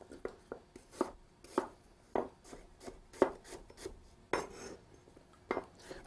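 Chef's knife dicing a peeled Granny Smith apple into small chunks on a wooden cutting board: a run of irregular chopping strikes, a few each second.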